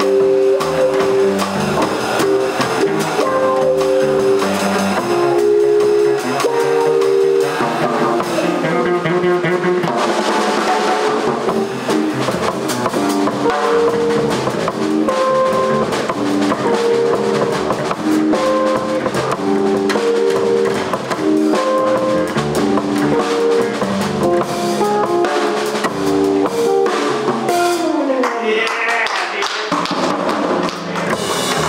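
Live jazz on archtop electric guitar, upright bass and drum kit playing together, with held guitar notes over walking bass and drums. A falling run of notes comes near the end.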